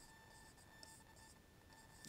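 Near silence with the faint scratch of a felt-tip marker writing on a board, in short strokes.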